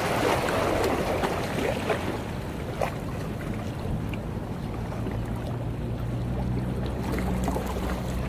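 Small waves lapping and splashing against the shoreline rocks, with a low steady motor hum from a boat setting in about halfway through.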